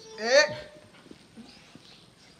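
A short, loud vocal exclamation rising in pitch, followed by a few faint clicks and taps.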